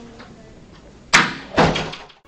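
Two sudden knocks about half a second apart, the first the louder, over faint room noise.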